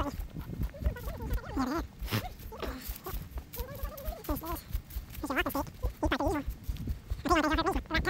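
A person's voice in short, wavering vocal sounds repeated every second or so, over the low rumble and scuffing of walking on a dry-leaf trail.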